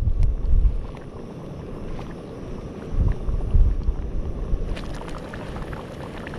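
Wind rumbling on the microphone in gusts, strongest at the start and again about three seconds in. Underneath is a pot of oat risotto simmering on a gas-fired Trangia camping stove.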